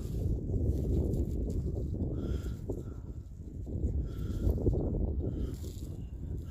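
Low wind rumble on the microphone, with light handling noise from a gloved hand turning a muddy find.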